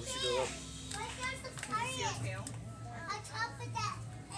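Children's voices chattering and calling out, several high-pitched voices overlapping, over a steady low hum.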